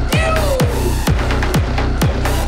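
Electronic dance music played loud over a nightclub sound system, with a kick drum about twice a second. Early on, a high pitched sound slides downward over the beat.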